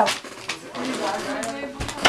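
Quiet talking, then a door shutting with a low thud near the end.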